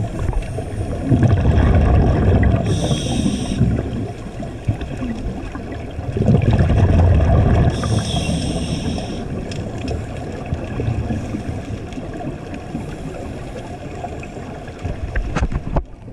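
A scuba diver breathing through a regulator underwater. Twice there is a long, rumbling, bubbling exhalation, followed each time by a short hissing inhalation.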